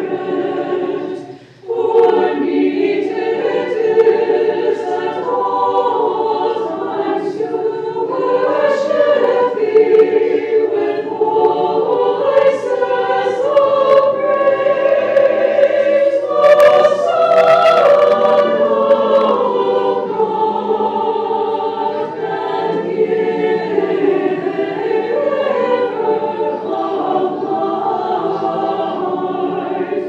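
A choir of nuns singing Orthodox liturgical chant without instruments, with a short break about a second and a half in before the singing resumes.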